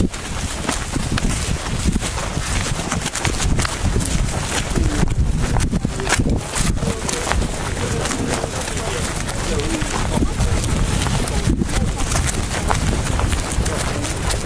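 Wind noise rumbling on a handheld camera's microphone while several people walk across a grass field, their footsteps and the jostled camera making many small knocks, with faint indistinct voices.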